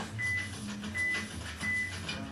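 Short, high electronic beeps at one pitch, three of them about two-thirds of a second apart, over a faint low hum.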